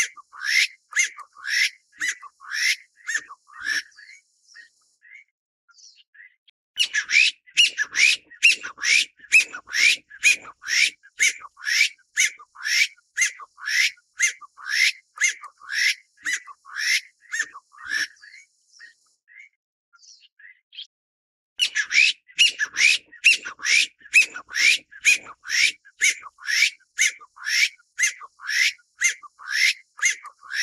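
Taiwan bamboo partridge calling: a loud series of short, sharp rising notes, about three a second, in three bouts. The first bout stops about four seconds in, the second runs from about seven to eighteen seconds in, and the third starts a few seconds later and continues.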